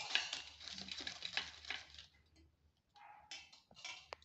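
Fingers patting and pressing a ball of thattai dough flat on a plastic milk packet laid on a steel plate. The plastic crinkles in quick, soft pats for about two seconds, then there are a few short rustles near the end.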